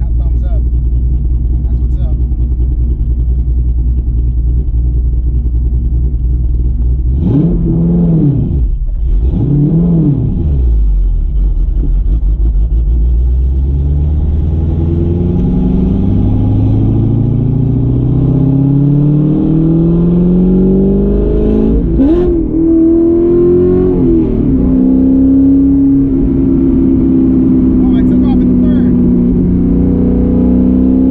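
Freshly rebuilt LS2 6.2-litre V8 with a Texas Speed MS3 cam in a Corvette Z06, heard from inside the cabin. It idles with a steady low rumble, is blipped twice in quick succession about eight seconds in, then pulls away and climbs in pitch through several gear changes before settling to a steady cruise near the end.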